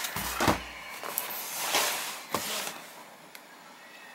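A white polycarbonate MacBook being handled and turned over on a desk: a knock with a low rumble about half a second in, then a few clicks and sliding rubs, growing quieter near the end.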